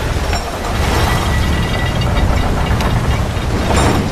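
Massive ornate gate doors grinding open, a loud, steady low rumble.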